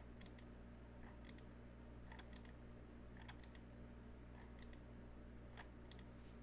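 Computer mouse button clicked about once a second, each click a quick press-and-release pair of ticks, over a faint steady low hum.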